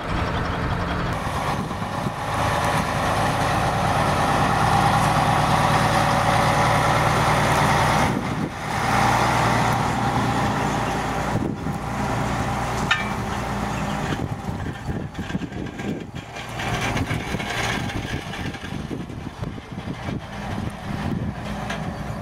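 Heavy diesel truck engines running at idle, a steady low hum. The sound changes abruptly a few times.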